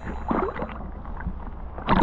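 Muffled sea-water movement and low rumble from a camera in a waterproof housing as a diver moves through shallow water, dulled with no high-pitched sound.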